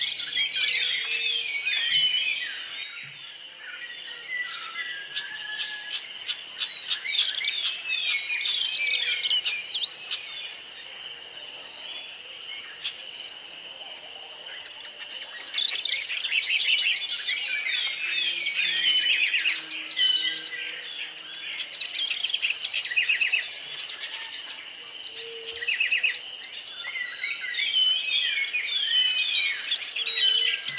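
Birds singing: many quick chirps and whistled sweeps in busy bouts with short lulls, over a steady high-pitched drone.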